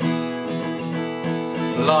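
Acoustic guitar strummed in a steady rhythm, chords ringing between the strokes; a man's singing voice comes in near the end.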